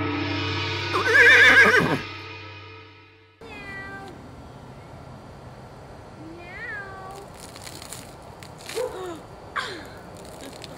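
Electronic intro music with a loud wavering synth tone, cut off abruptly about three seconds in. After the cut, a cat meows a few times in short, falling calls over a faint steady background hiss.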